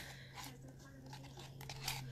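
Chip brush stirring latex paint thickened with calcium carbonate powder: faint, gritty crunching and scraping as the lumps of powder are worked out.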